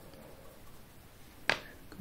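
Quiet room tone, broken by a single sharp click about one and a half seconds in.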